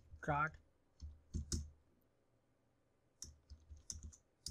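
Computer keyboard typing: a few keystrokes about a second in, a pause, then another run of keystrokes near the end. A short vocal sound just after the start.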